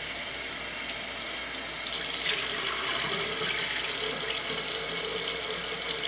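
Bathroom sink tap running steadily into the basin while a face is rinsed off with a washcloth, getting a little louder about two seconds in.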